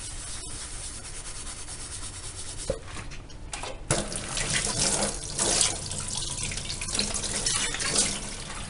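Tap water running into a stainless steel kitchen sink as a scrubbed pot is rinsed. It is fainter at first and grows louder from about four seconds in.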